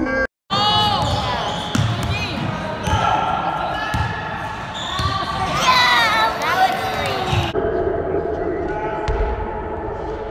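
Basketball bouncing on a hardwood gym floor at irregular intervals, with players' voices echoing in the large hall. The sound drops out briefly just after the start.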